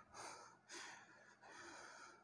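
Near silence, with three faint, short soft sounds spaced about half a second apart.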